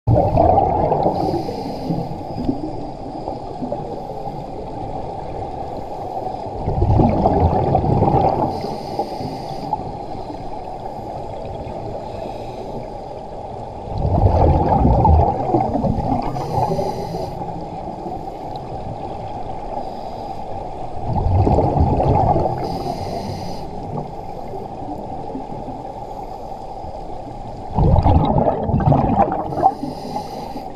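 Scuba regulator breathing heard through an underwater camera housing: a burst of exhaled bubbles about every seven seconds, five in all, each followed by a short high hiss, over a steady muffled underwater wash.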